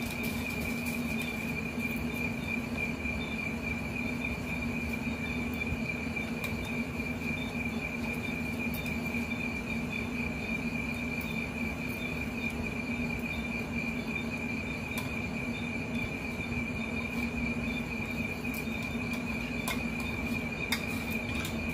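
Night insects chirring steadily at one high pitch, with a steady low hum beneath them.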